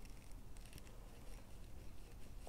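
Faint soft rubbing of fingers spreading mineral sunscreen over the back of a hand, with a few small ticks.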